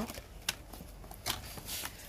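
Pieces of thick white cardstock being handled and slid into a paper trimmer, a soft rustle of card, with a sharp click about half a second in as the trimmer's arm is lifted and a few fainter clicks after.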